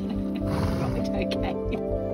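Background music over a few short vocal sounds from an agitated wombat.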